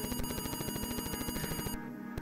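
Atari 8-bit computer's serial I/O noise through the monitor speaker: a fast, even buzzing chatter as the file is read over SIO from a FujiNet virtual disk drive. It stops shortly before the end, as the transfer finishes.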